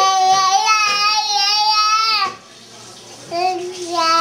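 Baby of about one year squealing in delight: one long, high-pitched, wavering squeal of about two seconds, then a second, shorter squeal near the end.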